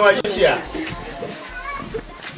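Voices speaking over background music.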